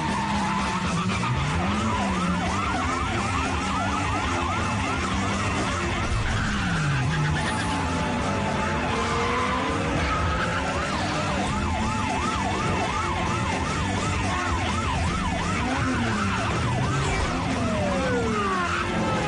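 Police sirens yelping in fast, repeated rising-and-falling sweeps, in two spells, over car engine and tyre noise from a red Subaru Impreza WRX sliding through a turn.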